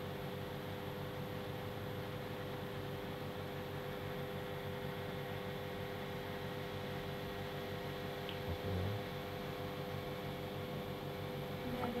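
Room tone: a steady hiss with a constant electrical hum throughout, and one brief low thump about three-quarters of the way in.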